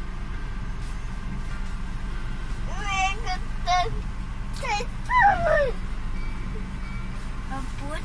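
Steady low rumble inside a car cabin while driving. About three seconds in, a young child's high-pitched voice calls out several times in short, sliding squeals.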